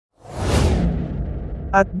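Whoosh transition sound effect: a swish that starts bright and high about a quarter second in, then sinks into a low rumble that lasts nearly two seconds.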